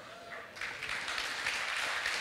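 Audience applause, starting about half a second in and going on steadily.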